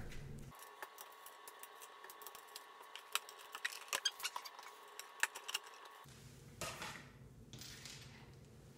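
Faint, quick run of small metallic clicks and ticks from an Allen wrench working the bolts of a wooden panel, then a short scraping rustle near the end.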